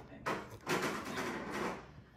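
A person sipping a drink from a glass: a brief click near the start, then about a second of noisy slurping.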